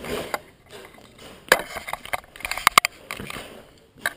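Handling of a laptop LCD panel in its metal frame as it is lifted out of the lid and flipped over: light clicks and knocks of metal and plastic, one sharper knock about a second and a half in and a quick run of clicks a little before three seconds.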